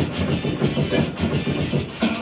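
Turntablism: a vinyl record on a turntable scratched and cut against a beat through the mixer, in a fast, choppy rhythm.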